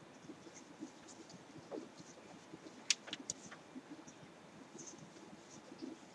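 Faint scratching and rustling of yarn worked with a metal crochet hook, with a couple of sharp clicks about halfway.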